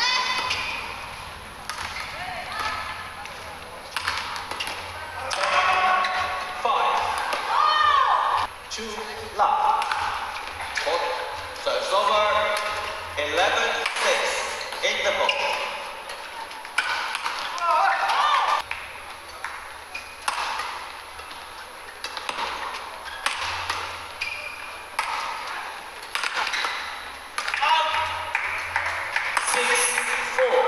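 Badminton doubles rallies: rackets repeatedly striking the shuttlecock with sharp hits, and players' shoes squeaking on the court mat, with voices in between.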